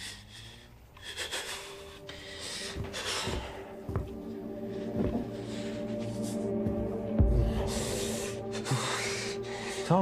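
Tense film score: a sustained drone that swells steadily, with heavy breaths rushing in and out over it and a deep low thud about seven seconds in.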